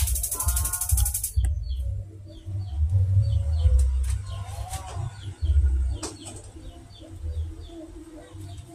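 A small bird chirping over and over, short falling chirps about two to three a second, over a low rumble; a brief high trill and a pitched sound come in the first second.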